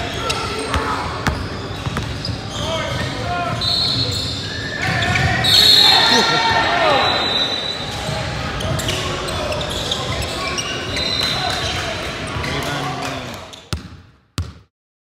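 Basketball game in a gym: the ball bouncing on the hardwood court amid shouting and chatter from players and onlookers, with sharp short knocks and brief high squeaks. The sound fades out near the end.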